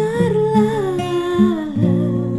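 Woman's voice singing one long note that slides slowly downward, over acoustic guitar chords in a worship song.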